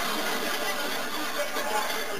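Studio audience laughing on a television sitcom, heard through the TV's speaker.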